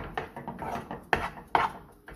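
A spoon scraping and knocking against a stainless steel saucepan as a thick, sticky mixture is stirred, in a run of short strokes, the strongest about a second in and again about half a second later. The mixture has thickened to the point of sticking to the spoon and to itself.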